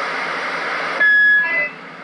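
Galaxy CB radio's speaker hissing with static between transmissions, then about a second in a louder burst of noise carrying a steady high beep and a couple of short higher tones as a station keys up.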